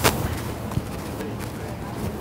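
A sharp click right at the start, then a fainter one just under a second in, over steady outdoor background noise with voices.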